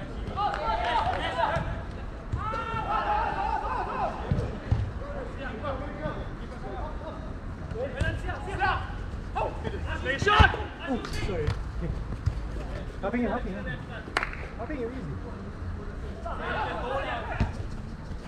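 Players shouting and calling to each other during a small-sided football game on artificial turf, with the thud of the ball being kicked. The loudest kick comes about ten seconds in and another about four seconds later.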